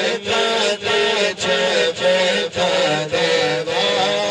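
Unaccompanied Urdu devotional naat sung by men into microphones over a PA: a lead male reciter's melismatic melody over rhythmic chanted vocal backing, the sound breaking briefly about twice a second.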